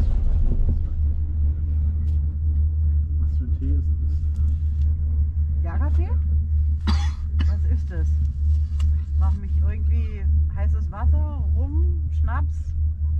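Steady, pulsing low rumble of wind on the microphone of a camera riding a chairlift, with quiet voices over it in the second half.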